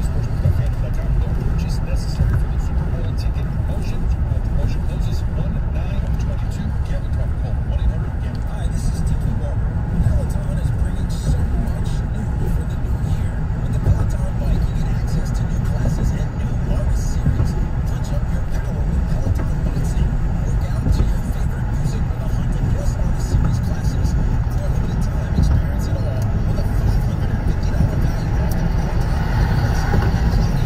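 Steady low rumble of road and engine noise inside a car cabin at highway speed.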